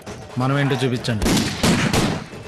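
A man's loud shout, then a burst of rifle shots fired into the air in the second half, several in quick succession.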